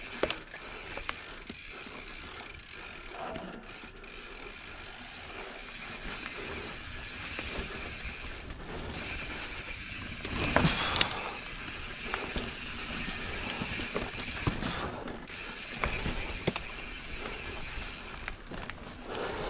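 Mountain bike riding over dirt singletrack: tyres rolling on the dirt, chain and frame rattling with scattered clicks, and the rear hub's freewheel ratcheting as the rider coasts. A louder clatter about ten and a half seconds in, as the bike hits something on the trail.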